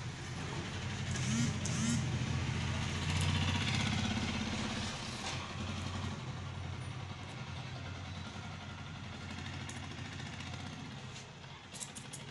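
A motor vehicle's engine running, a low rumble that swells over the first few seconds and then slowly fades away. A few faint clicks of scissors snipping hair are heard over it.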